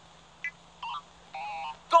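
High-pitched, sped-up gibberish chatter from a huddle of cartoon characters. It comes as a few short chirping blips, one longer, over a low steady hum.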